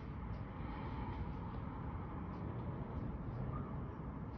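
Steady low rumble and hiss of outdoor background noise, with a few faint scattered clicks.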